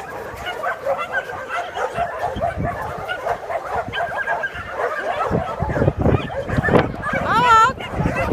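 Dogs yipping and whining throughout, with a longer wavering whine near the end. Low thuds join in from about halfway.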